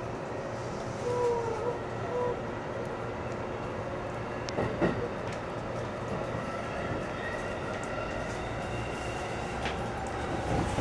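JR East E531 series electric train running, heard from inside the car: a steady rumble with a faint whine that rises gently in pitch in the second half, and a few sharp wheel clacks about halfway.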